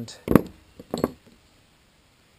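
Short steel pieces knocking against each other and the wooden tabletop as they are handled: one sharp knock about a third of a second in, then two lighter clinks around a second in.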